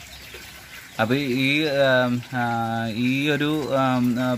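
Mostly a man's voice in long, drawn-out syllables. Under it, and alone for about the first second, a faint steady trickle of water in the bell-siphon grow bed.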